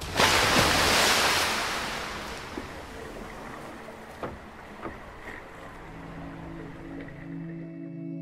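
A loud rush of splashing water starts abruptly and fades away over about three seconds. Low, steady music notes come in near the end.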